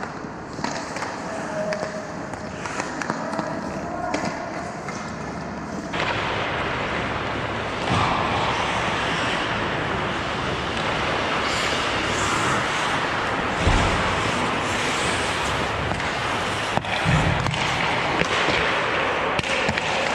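Ice hockey game on the ice: skate blades scraping and carving, sticks and puck clacking, with a few sharper knocks, the loudest about two-thirds of the way in. The sound grows louder and brighter about a third of the way in.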